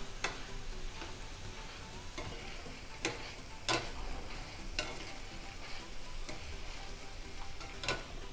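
Boondi (gram-flour batter drops) sizzling as they deep-fry in hot oil, stirred with a wire-mesh skimmer. A few sharp clicks come from the metal skimmer knocking against the pan, the loudest about three and a half seconds in.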